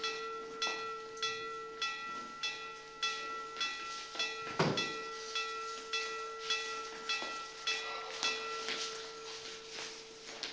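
A handbell rung steadily at a little under two strokes a second, its ringing tone held between strokes: the wake-up bell for a dormitory. A dull thump about halfway through.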